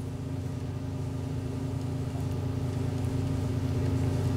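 Steady low mechanical hum with a few fixed tones, growing slowly louder.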